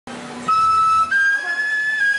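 After a brief low hum, a flute plays a clear, high held note that steps up to a higher note about a second in, the start of a slow melody.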